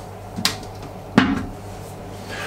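Two sharp plastic clicks from a manual marine toilet's pump handle being pushed down and turned to lock into position, a little under a second apart, the second louder.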